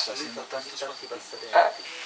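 A pause in speech in which a faint, steady, high-pitched chirring of crickets is heard, with a short faint sound about one and a half seconds in.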